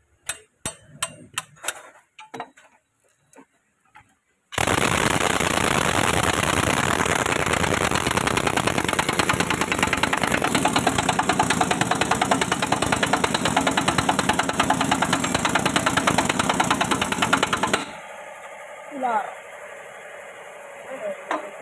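A few sharp metal clinks and knocks, then, about four and a half seconds in, an impact wrench hammering rapidly and steadily for about thirteen seconds before it stops abruptly. It is driving the nut of a fabricated puller, drawing a stuck power cell out of a hydraulic rock breaker's frame.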